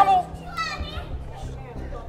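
A woman's shouted word breaks off just after the start, then faint voices are heard over low, steady background music.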